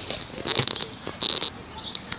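Heavy rain pouring as a steady hiss, with two short rustling scrapes about half a second and a second and a quarter in as the phone is handled.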